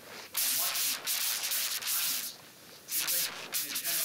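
Clothing rubbing against a clip-on microphone in repeated rustling bursts of about half a second to a second each, covering faint, low speech.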